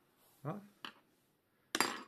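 A voice briefly says "Ja?", followed by a small click and then a short, sharp clatter of hard objects near the end.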